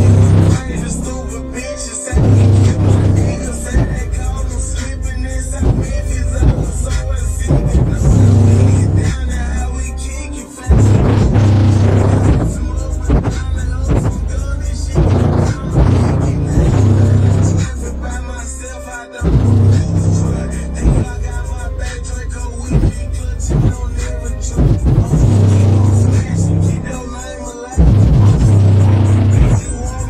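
Bass-heavy music played loud through a car audio system's two 12-inch subwoofers in a ported box tuned to about 28 Hz, heard inside the car cabin. The deep bass comes in strong repeated hits with a few short breaks.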